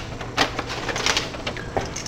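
Sheets of paper being shuffled and handled on a desk: a few irregular rustles, the strongest about half a second in and again around a second in.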